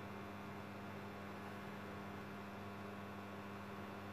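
Steady electrical mains hum with a faint hiss under it: the room tone of the recording, with no other event.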